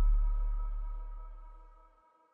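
A deep low rumble dying away steadily, gone by near the end, with faint steady high tones fading along with it.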